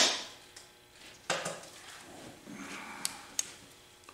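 Handling noise on a workbench: a sharp knock at the start, then two quick, light clicks about three seconds in, like small metal parts or a tool being picked up and set down.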